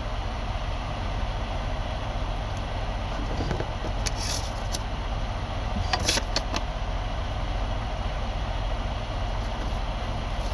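Steady low engine rumble under an even fan hiss, heard inside a vehicle cab, with a few faint clicks about four and six seconds in.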